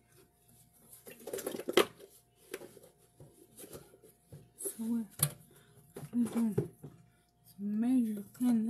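A paperboard milk carton and kitchen things being handled at a sink: rustling, light knocks and a sharp click about two seconds in. Later a woman's voice makes short, low, wordless sounds.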